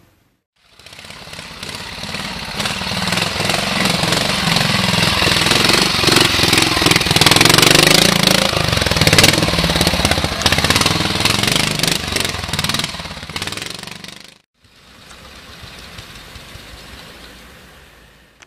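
Ariel four-stroke single-cylinder trials motorcycle engine running and revving unevenly as it is ridden over rocks, growing louder to a peak in the middle. The sound cuts off suddenly about fourteen seconds in, then the engine returns, quieter.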